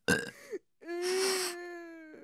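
A man's voice making wordless character sounds: a short grunt, then a long, drawn-out raspy vocal sound held at a steady pitch.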